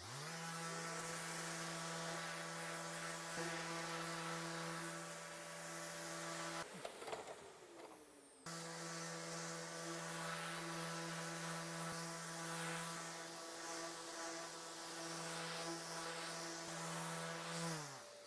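Festool orbital sander running against the fiberglass edges of a bow limb: a steady motor hum that spins up at the start, breaks off for about two seconds in the middle, then runs again and winds down with falling pitch near the end.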